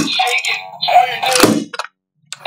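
A bacon-character toy alarm clock playing a recorded voice with music, with a thunk at the start and another about one and a half seconds in; the sound cuts off suddenly near the end.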